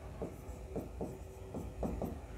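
A stylus writing on an interactive touchscreen board: a quiet run of short taps and scratches, about three a second, as pen strokes are drawn.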